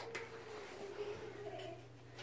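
Quiet kitchen room tone: a steady low hum, with a single sharp click at the start and a faint held tone that fades out near the end.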